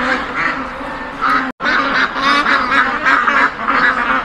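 A crowded pen of domestic ducks quacking, many calls overlapping continuously. The sound cuts out abruptly for an instant about one and a half seconds in.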